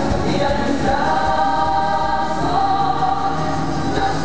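Female ranchera vocal group singing together over an instrumental accompaniment, holding long notes in the middle of the phrase.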